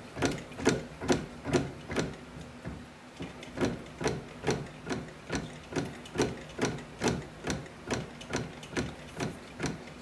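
Hand-operated bat-rolling press working a Louisville Slugger Meta One composite bat between its rollers, clicking regularly about twice a second, a little softer for a second or so about two seconds in.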